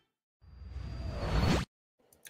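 A rising whoosh transition effect: a swell of noise that grows louder and climbs in pitch for about a second, then cuts off suddenly.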